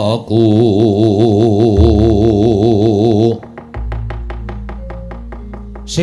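Javanese gamelan accompaniment of a wayang kulit performance: a sung voice with strong vibrato holds long notes over the ensemble. About three seconds in the voice stops, leaving a low sustained tone and a fast, even run of short knocks.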